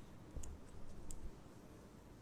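A quiet pause with faint room tone and two short, faint clicks, about half a second and about a second in.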